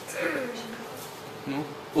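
A man's voice in a pause of speech: a short drawn-out vocal sound falling in pitch, then a brief "nu?" near the end, over faint room hiss.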